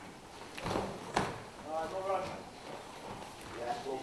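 Bare feet scuffing and stepping on foam floor mats as two grapplers hand-fight, with a sharp slap about a second in. A person calls out briefly in the middle and again near the end.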